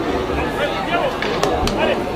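Several overlapping, indistinct voices of rugby players and onlookers calling out and chatting, with two sharp clicks about a second and a half in.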